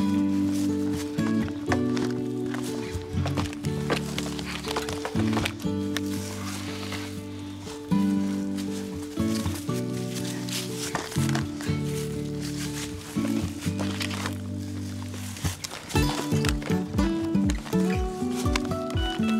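Instrumental background music: held chords under a melody, with a quicker run of short notes near the end.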